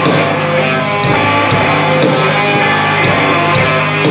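A rock band playing loud live, with electric guitars over a drum kit and steady drum hits. There is no singing.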